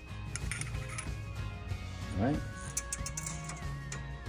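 Soft background music with long held notes, over a few light clicks of small parts being handled.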